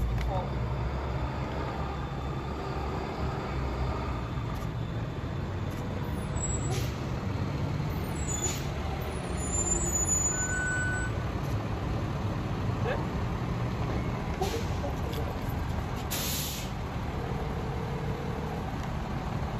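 City street traffic, a continuous low rumble. Short hisses of a heavy vehicle's air brake cut through it, the longest and loudest near the end.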